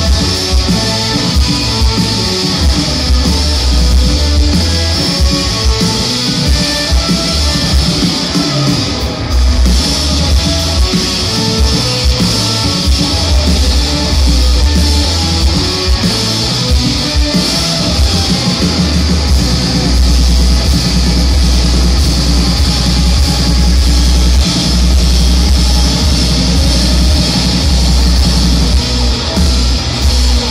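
Rock band playing live at full volume: electric guitars over bass and a drum kit. The sound dips briefly about nine seconds in.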